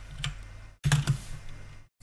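Typing on a computer keyboard: a few clusters of quick, irregular keystrokes with short pauses between them.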